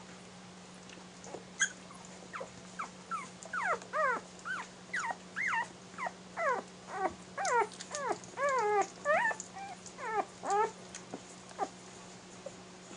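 One-week-old Airedale terrier puppies squeaking and whimpering while nursing: a quick run of short, high-pitched cries, many falling in pitch and several overlapping, from about two seconds in until near the end.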